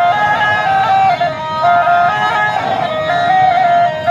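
A snake charmer's been (gourd reed pipe) playing a continuous melody of held notes that step up and down.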